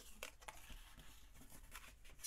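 Faint rustling of thin cardstock being handled and folded along its score lines, with one light click just after the start.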